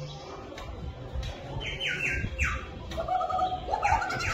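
Cartoon-style squeaky chirps from an animatronic gopher show effect popping up out of a hole in a vegetable-patch prop: four quick falling squeaks, then a rising squeak near the end as the gopher appears.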